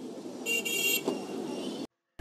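Street traffic ambience with a short car horn toot lasting about half a second, about half a second in. The sound cuts off suddenly near the end as playback is paused.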